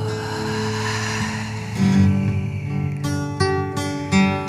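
Acoustic guitar strumming chords. A held chord rings out first, a fresh chord is struck about two seconds in, and a few quick strums follow near the end.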